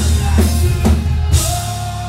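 Post-hardcore band playing live: about four heavy drum hits roughly half a second apart over bass and distorted guitar, the last with a cymbal crash, then a single held note as the drums drop away near the end.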